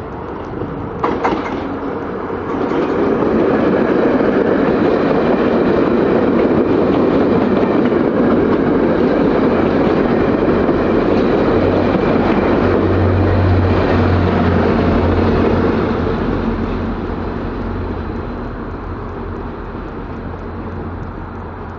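VIA Rail passenger coaches passing close by at speed: a steady loud rush of wheel and rail noise that builds about three seconds in and fades away after about sixteen seconds.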